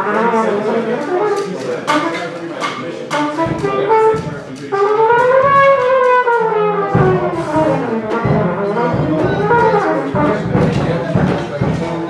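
Jazz big band playing a passage together, with saxophones and brass over drums. A melodic line rises and falls near the middle.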